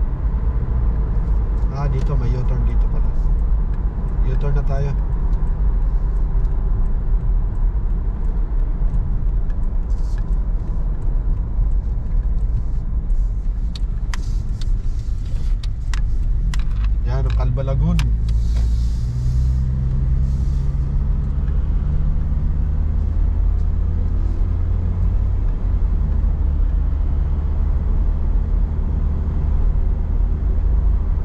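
Steady low rumble of a car driving on a paved road, heard from inside the cabin: tyre and engine noise.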